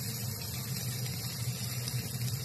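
A steady low hum with a faint, even hiss over it.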